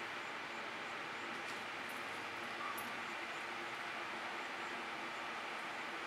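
Steady, faint background noise with no distinct sounds standing out.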